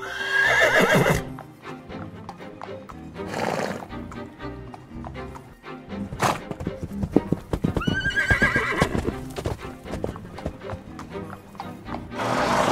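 Horse whinnying, once at the start and again about eight seconds in, with hoofbeats clattering in between, over background music.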